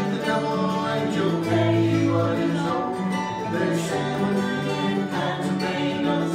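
A live acoustic band playing a country-bluegrass song, with guitar to the fore over a moving bass line.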